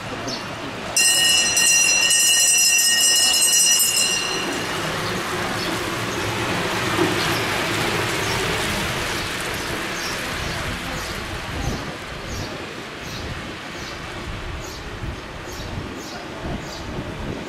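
A bell rung continuously and loudly for about three seconds before stopping abruptly, the lap bell of a track cycling race. Then a rushing sound swells and fades as the pack of track bikes passes close by.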